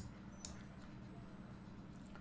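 Quiet room tone with a low steady hum and two faint clicks about half a second apart: a computer mouse clicking as a piece is moved on a screen chessboard.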